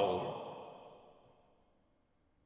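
A drawn-out vocal 'Oh!' trailing off and fading out within the first second, followed by silence.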